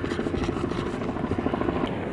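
An English bulldog panting hard and fast with a raspy, rhythmic breath.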